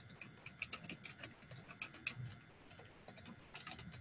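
Faint computer keyboard typing: quick, irregular key clicks.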